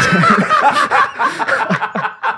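Several men laughing loudly together in overlapping bursts of hearty laughter.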